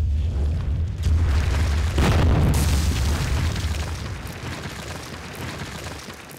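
Sound effect of a wall cracking and bursting apart. A deep rumble runs under it, with a crash about a second in and a bigger explosive burst about two seconds in. The noise then dies away gradually.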